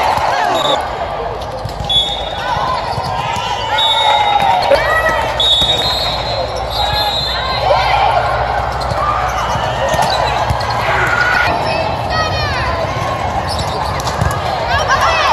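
Sounds of an indoor volleyball rally: scattered voices of players and spectators calling out, with the knocks of the ball being struck and bouncing and short high squeaks.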